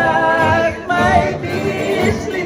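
A man singing a folk song into a microphone in long held notes, with acoustic guitars of a string band strumming underneath.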